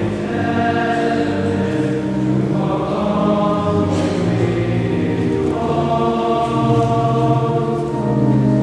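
Choir singing, with long held chords that change every two or three seconds.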